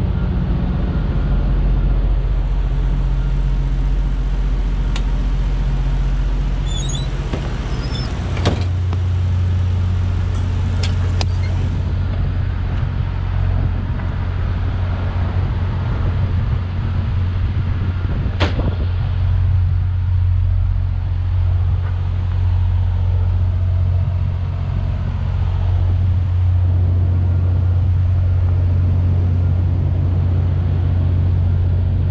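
Refrigerated trailer's reefer unit running steadily, a loud low hum, with a couple of sharp clicks about eight seconds in and again near eighteen seconds.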